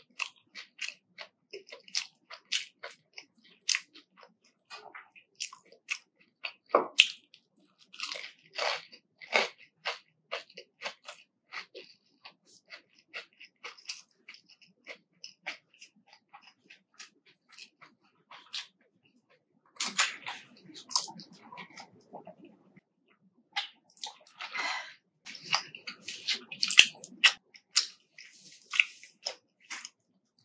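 Close-miked chewing of crisp fried breaded chicken nuggets: a steady run of sharp crunches. The crunching comes denser and louder about two-thirds of the way through and again near the end.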